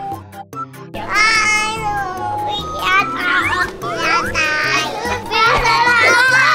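Children's excited voices, shouting and laughing, over background music with a steady bass line; the first second is quieter before the voices come in.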